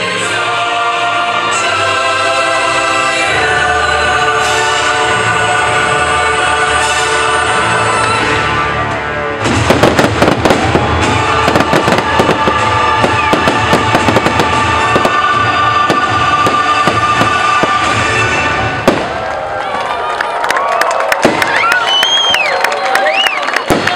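Show music plays alone at first. About nine and a half seconds in, a fireworks display starts: rapid bangs and crackles go off continuously over the music, with one sharp pop near the end.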